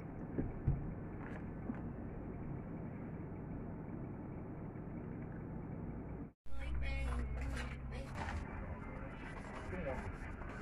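Steady indoor background hum with a couple of light clicks of chopsticks against a glass bowl. The sound cuts out abruptly at about six seconds and gives way to outdoor ambience with faint voices.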